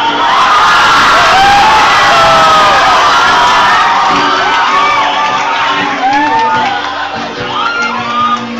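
A live audience cheering and shouting loudly over a live acoustic guitar and vocal performance. The cheering is heaviest for the first few seconds and then eases off as the music carries on.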